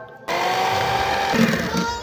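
Electric hand mixer running, its beaters whisking mashed avocado in a glass bowl. It starts suddenly about a third of a second in, with a steady motor hum.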